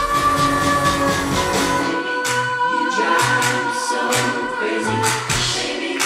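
Live pop band performance: a woman's voice holding long sung notes over acoustic guitar and band. About two seconds in, the low end turns into a regular pulsing beat.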